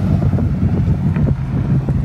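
Wind buffeting the microphone, a loud, ragged low rumble, with a steady low hum of road traffic underneath.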